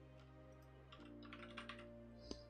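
Faint typing on a computer keyboard: a quick run of about six keystrokes starting about a second in, over quiet steady background music.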